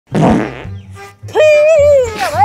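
Two fart noises over comedy background music: a short, noisy blast right at the start, then a longer, higher-pitched, wavering one in the second half.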